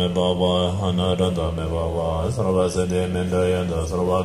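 Tibetan Buddhist monks chanting together in unison: a steady, deep, low-voiced drone with the chanted line moving above it.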